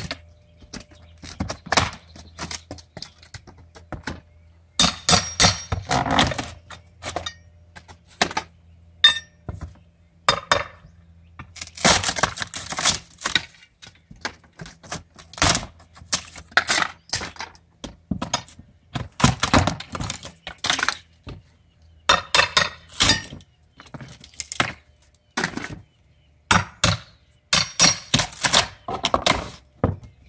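Wooden lap siding boards being pried and ripped off a wall with a claw hammer and a flat pry bar: irregular bursts of cracking and splintering wood, with knocks and metal clinks from the tools.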